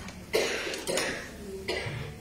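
A person coughing three times, the first cough the loudest.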